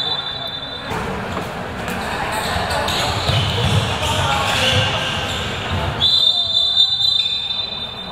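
Referee's pea whistle blowing in an indoor handball hall: a blast of about a second at the start and a longer one of about two seconds from about six seconds in, stopping play for a foul. Between them are players' shouts and the thud of the ball on the court.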